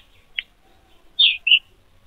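A bird chirping twice in quick succession, short high calls a little over a second in, after a faint click.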